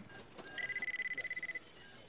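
Electronic sound effect of a fingerprint scanner at work: a steady high beep starting about half a second in, then a higher, fast-pulsing chirp that runs on, as the fingerprint is read and sent to a computer.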